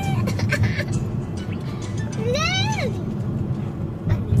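Low, steady rumble of a car cabin on the move, with a child's brief high-pitched vocal sound rising and falling about two and a half seconds in.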